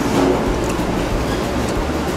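Restaurant room noise: a steady low rumbling hum under a general background haze.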